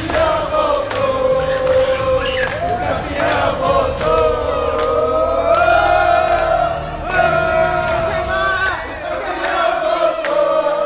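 A group of men singing a celebration chant together in unison, holding long notes that rise and fall.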